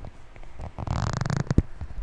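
Close-up handling noise: a rapid rasp lasting under a second, then a sharp click.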